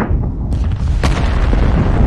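Rocket engines at liftoff: a loud, deep, continuous rumble with sharp crackles about half a second and a second in.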